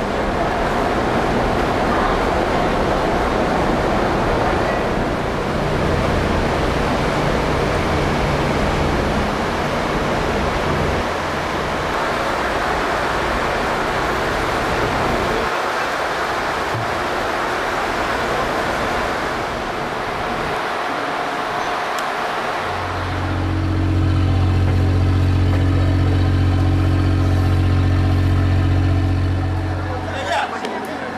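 Steady rushing outdoor noise with heavy machinery running at a canal lock. From about 23 seconds in, a loud steady low drone with overtones comes in and stops suddenly near the end.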